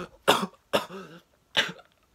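A man coughing three times in quick succession, short sharp coughs under a second apart.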